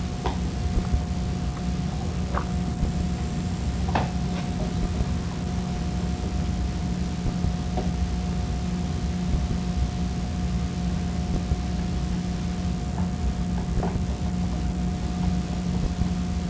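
Steady low hum and hiss with a thin steady tone above it, and a few light clicks of a screwdriver working the screws that fix a metal cord connection box to a motor bracket, the loudest about four seconds in.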